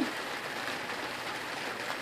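Steady rain falling, an even hiss with no separate drops standing out.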